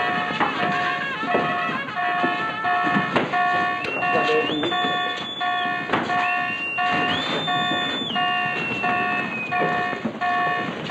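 A warship's general quarters alarm sounding in short repeated pulses, about two a second, calling the crew to battle stations. A higher whistling tone glides up and holds twice partway through.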